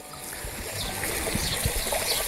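Prawns frying in butter in a frying pan: a steady sizzling hiss that slowly grows louder.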